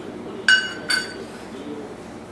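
Two ringing clinks of kitchenware knocked together, about half a second apart, the first louder.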